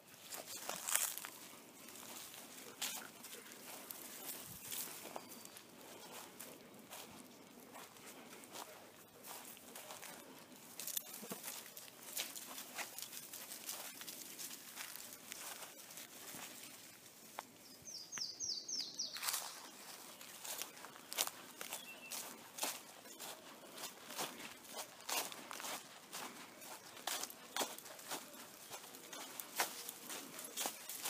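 Irregular crunching footsteps of a person and a leashed dog walking over dry pine straw and fallen leaves, growing busier in the second half.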